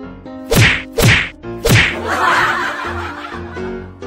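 Three loud, sharp whack sounds about half a second apart, over background music, followed by a brief rushing noise.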